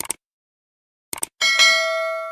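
Sound effects of a subscribe-button animation: a quick double mouse click, another double click about a second later, then a bright bell ding that starts about one and a half seconds in and rings on.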